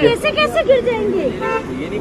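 People talking on a busy road, with a short vehicle horn toot about one and a half seconds in.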